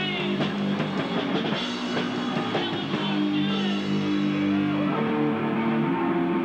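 Hardcore punk band playing live: distorted electric guitar and drum kit, the drum strikes busier in the first half and held guitar chords ringing through the second.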